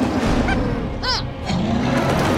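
Cartoon soundtrack music over a deep rumble, with two short rising-and-falling cries, about half a second and about a second in.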